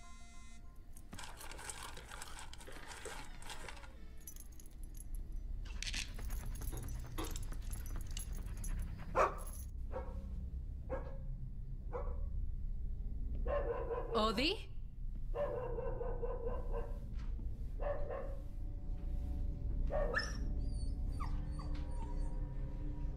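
A dog barking in short calls a second or two apart, with a longer whining call about fourteen seconds in, over a low steady rumble.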